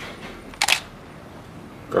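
A camera shutter clicking once, sharp and brief, about two-thirds of a second in, over quiet room tone.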